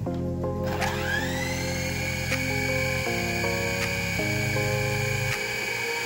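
Background music with a high whine that rises over about a second and then holds steady: the SG701 quadcopter's small propeller motors spinning up and running.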